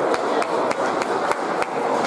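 School concert band music in which a sharp percussion click keeps a steady beat, about three to four strokes a second, over softer sustained playing.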